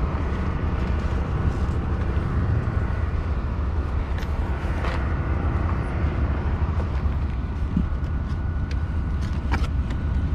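Steady low outdoor rumble, with a few light clicks and rustles as food and drinks are packed into a mesh bag at a car's open cargo area.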